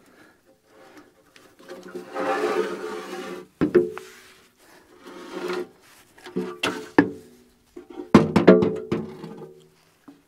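Steel hydraulic boom cylinder of a backhoe being pried and worked loose from the boom: metal scraping against metal for a second or two, then a string of sharp clanks with brief metallic ringing, loudest about a third of the way in and again past the eight-second mark.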